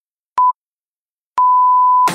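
Workout interval timer's countdown beeps, all at the same pitch: one short beep, then about a second later a long beep that marks the end of the work interval.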